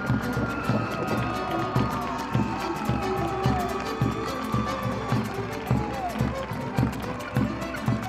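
Malambo zapateo: a troupe of dancers stamping and striking their boots on the stage floor in a fast, even rhythm with regular heavy accents, over live Argentine folk music from violin, accordion and guitars.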